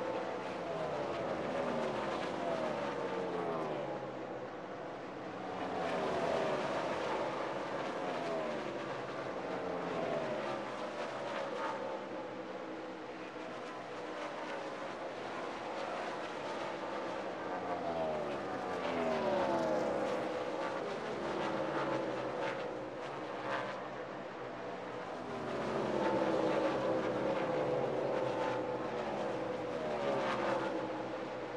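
NASCAR Sprint Cup stock cars' V8 engines running at race speed. Cars go by again and again, each pass with a falling pitch, over a steady engine noise.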